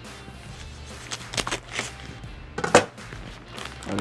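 Plastic film on a packaged tray being slit with a knife and peeled back: a few separate crinkles and sharp snaps, the loudest about three-quarters of the way in, over steady background music.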